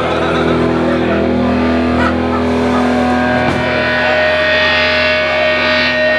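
Distorted electric guitar through a Blackstar amplifier, holding a sustained chord. Higher feedback tones build up from about four seconds in.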